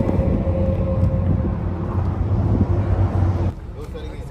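Steady outdoor road-traffic noise with wind buffeting the microphone and faint indistinct voices; it drops off suddenly near the end to a quieter background.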